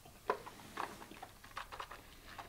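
Faint mouth sounds of a taster working a sip of neat whisky: a sharp click about a quarter second in, then a run of short lip smacks and tongue clicks.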